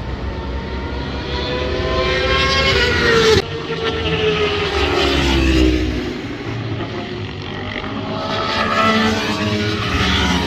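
High-revving sport motorcycle engine on a race track. The pitch climbs as it accelerates, cuts off abruptly about three and a half seconds in, then falls away and climbs again near the end.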